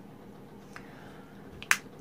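Quiet room tone broken by a faint tick and then one sharp click near the end.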